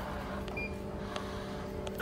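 Steady low mechanical hum over a low rumble, with a couple of faint clicks.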